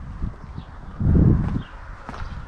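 Low rumble and buffeting on a handheld camera's microphone while walking, loudest for about half a second just after a second in, with a few soft thumps before it.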